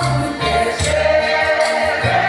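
A large women's choir singing a gospel hymn together, loud and steady, with deep low drum beats under the singing.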